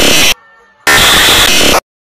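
Heavily distorted, clipped audio blasted at full volume in two harsh buzzing bursts, each cutting off abruptly, with a brief faint gap between them: an ear-rape style distortion edit.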